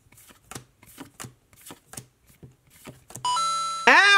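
Pokémon trading cards being moved one by one from the back to the front of a hand-held stack, a soft card snap every half second or so. Near the end a short, louder chime sound effect rings for under a second.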